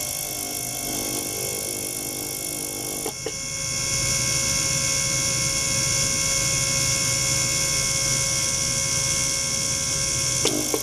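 Ultrasonic cleaning bath running with an ultrasonic probe in a bottle of water: a steady high hiss and whine from cavitation in the water, with several steady tones. About three seconds in, after a couple of clicks, it gets louder and holds steady.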